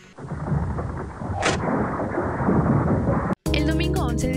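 A steady rumbling noise with a brief hiss about one and a half seconds in. It cuts off suddenly near the end, and music with a steady beat starts.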